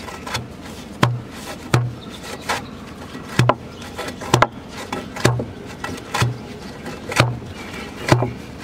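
Hand-held pole tamper driven repeatedly down into wet sand in a fence-post hole, packing it around the post: about nine dull thuds, roughly one a second. The solid thud is the sound of fill packing tight, so the post won't move.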